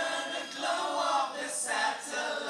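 Live rock band playing, with several voices singing together.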